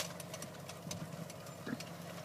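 Tractor engine running steadily at low speed, a faint even hum as it slowly pulls a mechanical tomato transplanter, with a brief sharp click right at the start.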